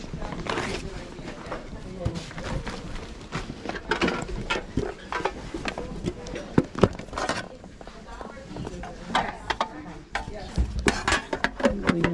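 Background voices of people talking, with scattered short knocks and clicks of cardboard game boxes being handled and shifted on a crowded table.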